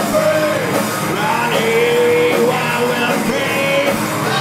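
Hard rock band playing live: distorted electric guitars, bass guitar and drum kit, with a melodic lead line that bends and holds on top.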